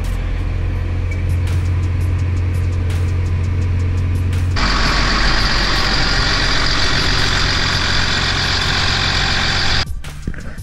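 Case IH Magnum 245 tractor's diesel engine idling, a steady low hum heard from inside the cab. About four and a half seconds in, the sound cuts abruptly to a louder, hissier engine noise heard from outside.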